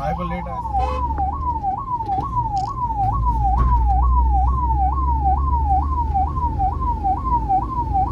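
Ambulance's electronic siren sounding continuously, heard from inside the Suzuki van's cab: a fast repeating sweep, each cycle a quick rise and a slower fall, about two a second. The van's engine rumbles underneath.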